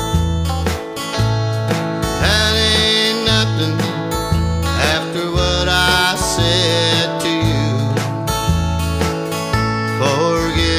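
Country song with guitar and a bass line over a steady beat.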